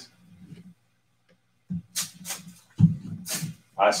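A small manila paper envelope being handled and its flap pulled open, heard as a few short paper rustles and light knocks that begin about halfway through, after a near-silent stretch.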